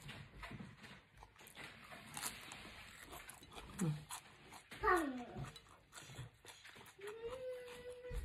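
A person chewing a lettuce wrap of soy-marinated shrimp and salmon with the mouth closed, giving soft, quiet crunching clicks. A few hummed 'mmm' sounds come in: a short one about four seconds in, a falling one a second later, and a held one near the end.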